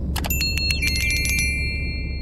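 Notification-bell sound effect: a quick run of sharp clicks about a fifth of a second in, then a bell ringing with several bright tones that ring on and fade, over a low steady hum.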